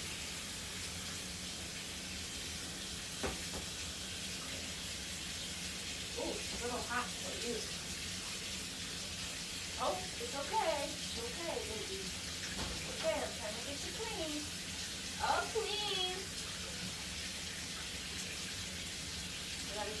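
Water spraying steadily from a hand-held shower hose into a bathtub as a puppy is rinsed of shampoo. Four short bursts of voice sound come through over the spray, about six, ten, thirteen and fifteen seconds in.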